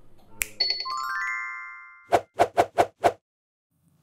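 Cartoon sound effects: a quick run of chime-like tones that ring and fade, then five quick pops in a row, one for each figure in a row of five cartoon characters popping onto the screen.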